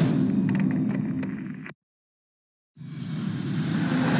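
Film trailer sound design: a deep rumbling drone fades away, cuts to about a second of dead silence, then a rumble swells back in with a rising whoosh.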